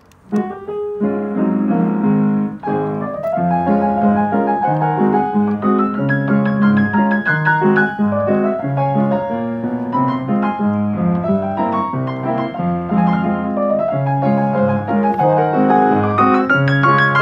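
Grand piano playing a tune by itself, driven by its Marantz Pianocorder cassette player system. The playing starts about a third of a second in after a short pause, with a steady moving bass line under the melody.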